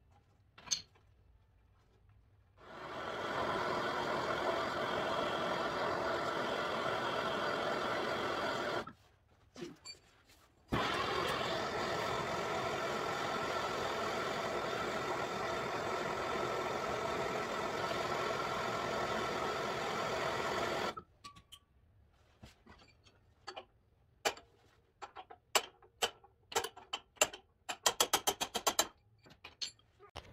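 Handheld gas torch burning with a steady rushing hiss, running for about six seconds, cut off, then relit with a sharp click and burning for another ten seconds. Near the end come a series of sharp hammer taps on metal, quickening at the very end.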